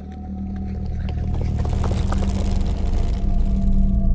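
Low, droning soundtrack with steady held tones that swells in loudness, with a stretch of hissing, crackling noise through the middle.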